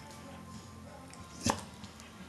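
A single sharp click or knock about one and a half seconds in, over a quiet background.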